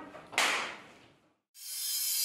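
A single sudden swish about half a second in that dies away, then a moment of silence before music fades in near the end.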